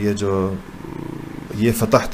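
A man lecturing in Urdu holds a drawn-out syllable. There is a short, quieter, low buzzing pause-sound, and about a second and a half in he goes on speaking.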